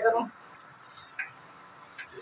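Glass bangles on a wrist clinking against each other lightly, a few short jingles in the first second or so.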